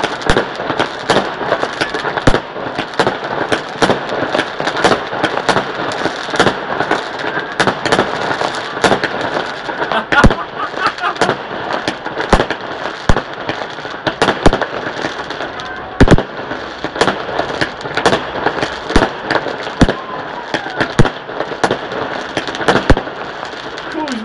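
Many fireworks going off at once: a dense, unbroken crackle of pops and bangs, with louder single reports every second or so and a few especially loud ones scattered through.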